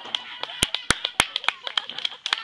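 Scattered applause from a small audience: a dozen or so sharp, unevenly spaced hand claps.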